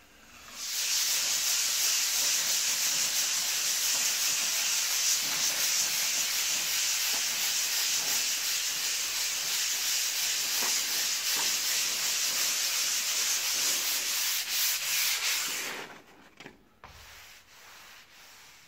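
Hand sanding of a ready-mixed plaster skim repair on a wall with a sanding sponge. A continuous rasp starts about half a second in and stops about two seconds before the end, followed by a few faint knocks.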